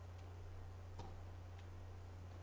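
Three faint, sharp clicks, the loudest about a second in, over a steady low hum.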